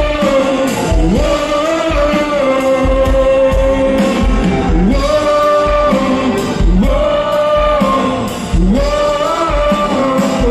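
Live rock band playing with a lead vocal: electric guitar, bass, drums and keyboard under sung phrases with long held notes, heard through the PA in a large hall.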